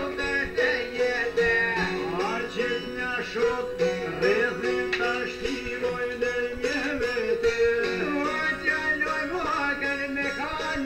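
Two small long-necked plucked lutes playing together, a quick run of picked notes in a folk tune.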